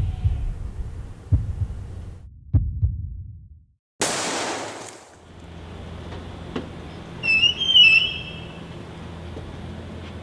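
A slow heartbeat sound effect thumps and fades into a moment of silence, then a single pistol gunshot cracks out and dies away over about a second. A low steady hum follows, broken near the end by a short, high-pitched warbling sound, the loudest thing here.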